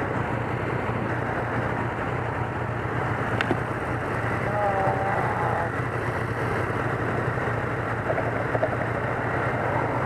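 Yamaha FZ-09's three-cylinder engine idling steadily while the motorcycle waits at a stop, with a single click about three and a half seconds in.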